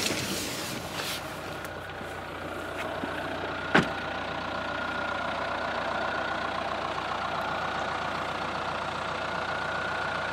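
Dacia Duster engine idling steadily, with a faint steady whine over the hum. A single sharp knock comes about four seconds in.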